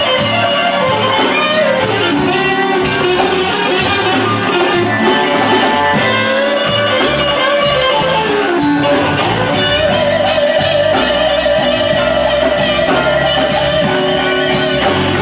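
Live electric blues: an electric guitar plays lead lines with bent notes and a long held note in the second half, over the band's steady drum beat.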